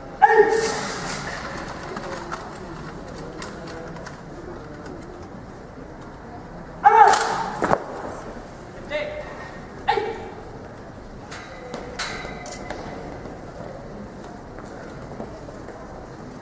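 Drawn-out shouted military drill commands ringing across an open square: a loud one at the start, another about seven seconds in and a shorter one near ten seconds. A couple of sharp clacks fall in between.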